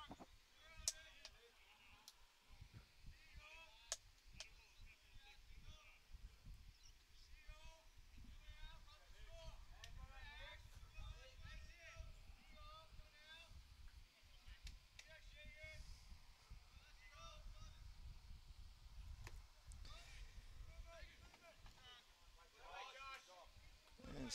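Faint distant voices over a low rumble, with a sharp click about a second in and another around four seconds.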